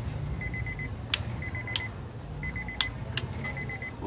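A car's door-open warning chime beeping: a quick burst of about five high beeps, repeating once a second. Four sharp clicks come in among the beeps as the LED panel light is handled.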